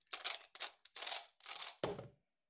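Skewb puzzle cube being turned very fast: about five quick rasping plastic twists in under two seconds. Near the end comes a duller thump as the hands come down on the timer to stop the solve.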